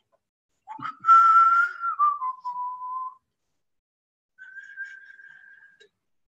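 A person whistling: a held note that slides down to a lower one and stops. After a short gap comes a fainter, higher held note.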